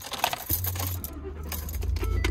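Keys jangling on the ring as the ignition key is turned, then about half a second in a Ford F-150 pickup's engine starts and runs with a low, steady rumble.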